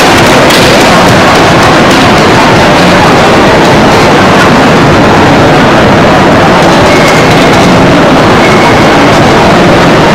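Steady, heavily distorted din of a crowded exhibition hall, loud enough to overload the recording.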